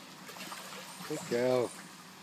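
A single short, drawn-out vocal sound from a person about one and a half seconds in, dipping in pitch at its end, over low background noise.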